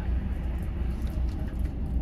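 Volvo B11RT coach's six-cylinder diesel idling while standing at a stop, a steady low rumble heard from inside the coach.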